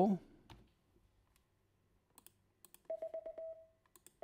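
Morse code audio tone sending the number four: four short dots followed by one dash, a single-pitched beep about three seconds in.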